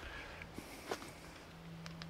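Quiet woodland background with a faint, steady low hum and a few light clicks; near the end a gloved hand reaches to the camera and handles it.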